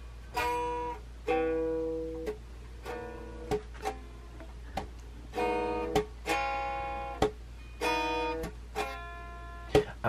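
Blue solid-body electric guitar, missing a string and out of tune, strummed in a slow run of about a dozen chords. Some are single strokes and some come in quick pairs, each left to ring and fade for up to a second before the next.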